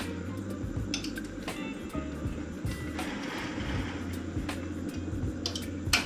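A few sharp clicks from a Yamaha RX-V661 AV receiver's relays as it powers up, the last and loudest near the end, over a steady low hum. The relays engaging and staying in means the receiver's start-up self-check has found no fault such as DC on the speaker terminals.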